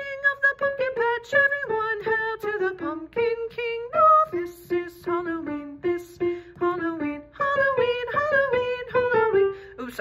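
A woman singing a soprano vocal line in quick, short notes without clear words, several phrases stepping downward in pitch.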